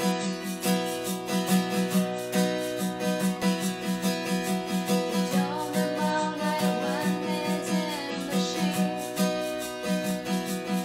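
Acoustic guitar strummed in a steady rhythm, with a voice singing softly from about five seconds in.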